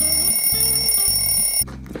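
Phone ringing: a loud, steady, high-pitched electronic ring that starts suddenly and cuts off about a second and a half in, over guitar music.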